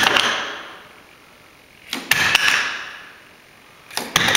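White dummy missile stores dropping one at a time from a model aircraft's wing pylons and clattering onto a wooden floor: one right at the start, another about two seconds in, and a third just starting at the end. Each is a sharp knock followed by a clatter that fades over most of a second.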